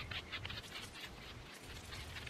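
Faint, quick scratchy strokes of a hand brush raking through a Great Pyrenees dog's thick coat.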